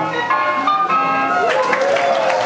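Closing music from a 16mm film's soundtrack, heard in an auditorium, with the audience starting to applaud near the end.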